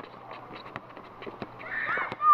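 Basketball game on an outdoor asphalt court: the ball being dribbled and running feet give irregular sharp knocks, with short high-pitched squeals that get louder near the end.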